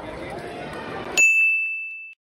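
Students chattering in a large school commons. About a second in, the background audio cuts out and a single bright ding sound effect rings and fades away.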